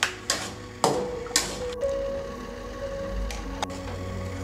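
Background music with held notes under about six sharp clinks and knocks of steel kitchenware: a mixer-grinder jar and a ladle against a cooking pan, loudest in the first second and a half.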